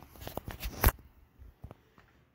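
Handling noise: a few light clicks and taps as the phone is moved, the loudest just before a second in, then a couple of faint ticks.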